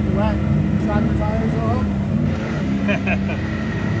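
Side-by-side UTV engine running steadily while driving, heard from inside the open cab, with snatches of voices over it.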